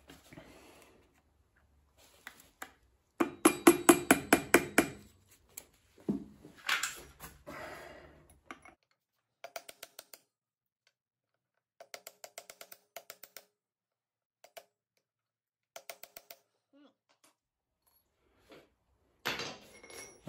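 Steel chisel working against the clutch-nut lock washer: bursts of rapid metallic clicking and scraping, the loudest and longest run a few seconds in, then several shorter runs with pauses between.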